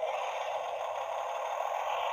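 Electronic engine sound effect from a Tonka Power Movers toy cement mixer's small built-in speaker, just switched on with its power-up button: a steady, thin engine noise.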